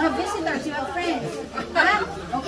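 Indistinct chatter of several voices talking, with one voice louder near the end.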